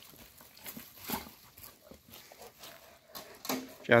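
Faint, scattered rustles and taps of movement on dusty ground, with a man's voice starting right at the end.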